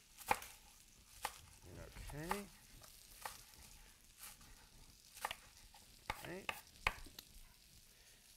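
Knife blades tapping and clicking on wooden cutting boards at irregular intervals as green onions are sliced, with a faint frying sizzle from sausage browning in a wok underneath. A short hum from a voice about two seconds in.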